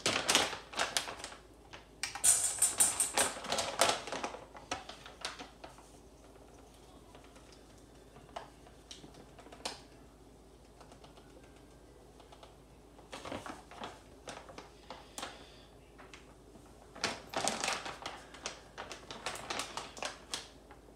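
Plastic bag of coconut flour crinkling and rustling as it is handled and opened, in clusters of sharp crackles and clicks, the densest about two to four seconds in. A long quiet stretch follows while flour is shaken into a stainless steel bowl, then more crinkling and clicks near the end.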